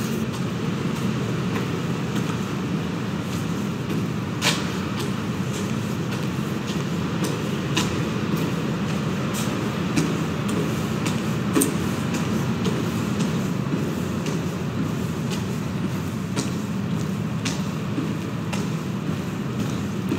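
Steady low rumbling noise heard while walking through a concrete pedestrian tunnel, with a few sharp clicks at irregular intervals.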